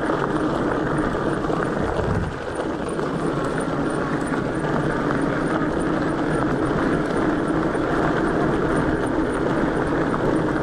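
Ecotric 26-inch fat-tire electric bike riding fast along a dirt trail at about 20 mph: a steady hum from the wide tires on the ground and wind rushing over the chest-mounted camera, with a brief dip about two seconds in.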